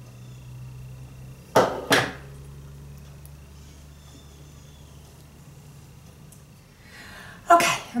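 Metal duck bill hair clips and hair being handled while a curl is pinned up: two short, loud sounds about half a second apart, over a low steady hum.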